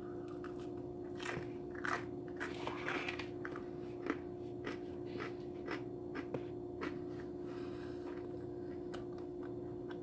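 A person biting into food and chewing close to the microphone, with small wet mouth clicks and crunches that are busiest in the first seven seconds and then thin out. A steady low hum runs underneath.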